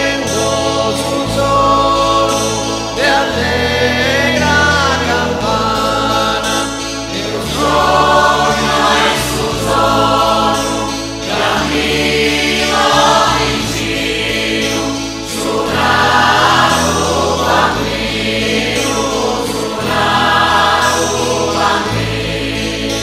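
A mixed choir and solo voices singing a slow Sardinian Christmas song over instrumental accompaniment, with sustained bass notes that change every second or two.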